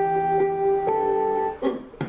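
Guitar music: a held chord of plucked strings that changes about a second in, then breaks off briefly near the end.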